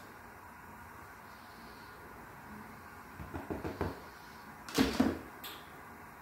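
Plastic kitchen containers being handled: a few light knocks and rustles about three seconds in, then a louder plastic clack, the lid going back onto a plastic tub of grated mozzarella, with a short click just after.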